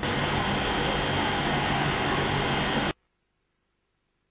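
Steady loud rushing noise with a faint low hum, cutting off abruptly about three seconds in to near silence.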